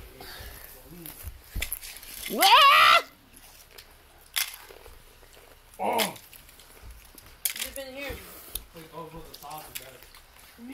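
Excited voices with a loud rising shout about two seconds in, a shorter cry around the middle, and a few sharp clicks between them.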